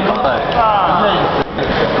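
People's voices talking and calling out in a large gym hall, with a brief lull about one and a half seconds in.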